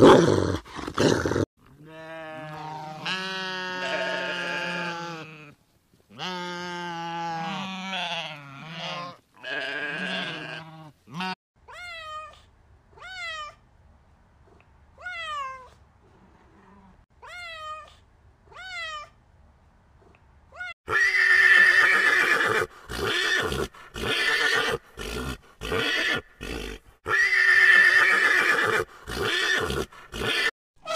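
A run of separate animal calls. First come long, pitched calls lasting a few seconds each. Then a kitten mews in short cries that rise and fall, about one a second, and near the end horses neigh in loud calls with short gaps between them.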